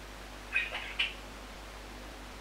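Budgerigar calling: two short, high calls about half a second apart, over a steady hiss.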